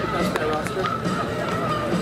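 Indistinct voices and music running together at a steady level, with a few short sharp clicks.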